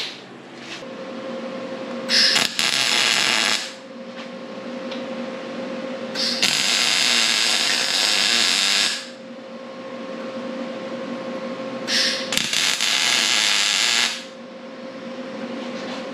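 Wire-feed welder laying three short tack welds a few seconds apart, each a steady crackling buzz lasting about one and a half to three seconds.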